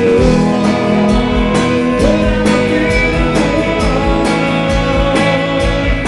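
Live band playing a rock song: strummed acoustic guitar and a second guitar over a steady beat of about two hits a second.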